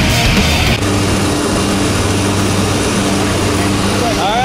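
Background music cuts off under a second in, leaving the steady drone of the jump plane's propeller engines heard from inside the cabin.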